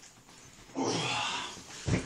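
A man's loud, strained grunt of effort, lasting under a second, during an overhead sandbag press. A heavy thud comes near the end as the bag comes down.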